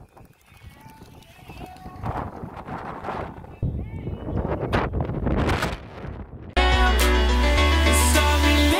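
Music from a JBL PartyBox 300 heard faintly from about 200 m away across open water, under gusty wind rumbling on the microphone. Near the end, loud, clear music with heavy bass starts suddenly.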